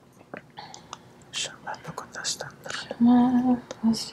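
A woman speaking in tongues (glossolalia) in soft, whispered syllables, then breaking into a sung, held note about three seconds in, with a short second note near the end.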